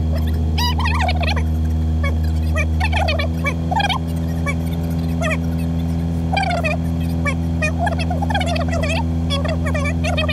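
Birds calling and warbling repeatedly over a 4WD's engine idling steadily, its note shifting slightly about three seconds in.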